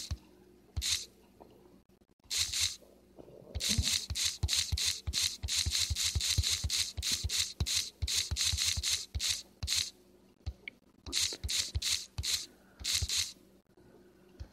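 A rapid series of short, crisp clicks or taps, about three to four a second, in two runs with a brief pause between them.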